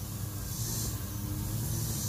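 Outdoor background noise: a steady low rumble with a faint high hiss that swells now and then.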